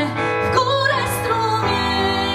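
A woman singing a slow song, holding and gliding between notes, over sustained keyboard chords.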